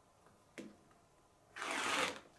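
Rotary cutter slicing through fabric along the edge of an acrylic quilting ruler on a cutting mat: one noisy stroke about half a second long, near the end.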